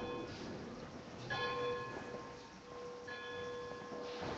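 A bell struck three times, about a second and a half apart, each strike with the same ringing note that carries on after it.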